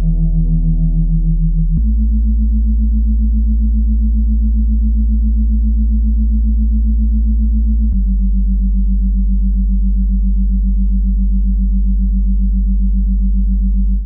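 Monaural-beat meditation soundtrack: sustained synthesizer drone tones over a deep bass hum, the main tone pulsing rapidly. The tones shift to a new pitch about two seconds in and again about eight seconds in.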